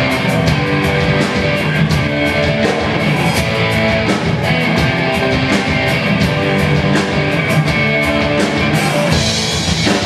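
Live rock band playing: electric guitars, bass and drum kit at a steady, loud level, with a regular drum beat.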